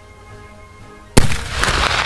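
A single shot from a Mk I Martini-Henry rifle firing a black-powder .577/450 cartridge: one sharp, very loud report about a second in, followed by a long echoing tail.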